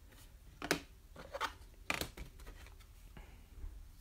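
Trading cards and a plastic card sleeve being handled on a table: two sharp clicks, one under a second in and one about two seconds in, then soft plastic rustling.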